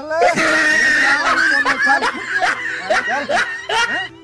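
Loud human laughter with shrill, high-pitched cries, loudest in the first second or so.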